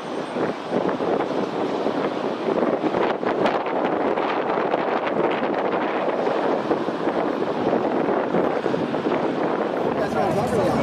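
Steady rushing outdoor noise, with wind on the microphone, a little louder after about a second in.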